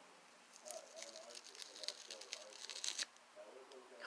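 Old adhesive sticker being peeled off a fabric cap brim: a quiet run of irregular crackles and ticks as the glue lets go, from about half a second in until about three seconds.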